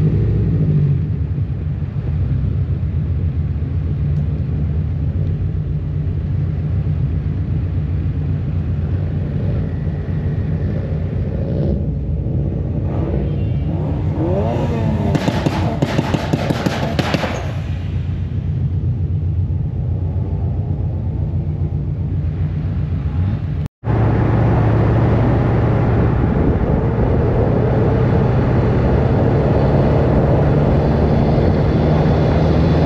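Car engine running steadily at low speed, heard from the open cockpit of a convertible, a constant low drone. A short, louder stretch with rapid clattering pulses comes about halfway through. A sudden break a few seconds before the end leads into a louder drone.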